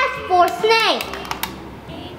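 A child's high voice in two short drawn-out syllables in the first second, then a scatter of light clicks as the steel beads of a MagnaTab magnetic drawing board snap up under the magnetic stylus tracing a letter.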